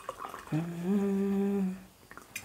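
A man humming a long held note with closed lips. The note steps up slightly in pitch just under a second in and fades out shortly before the end.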